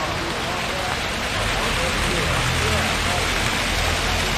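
Steady splashing and hiss of an outdoor fountain's falling water, growing slightly louder toward the end.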